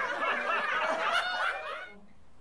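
High-pitched laughter with a few snickers, stopping just before the end.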